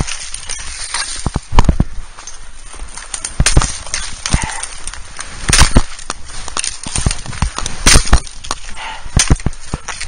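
Fiskars brush axe chopping through willow stems: a series of sharp, irregular whacks, roughly one or two a second, some in quick pairs.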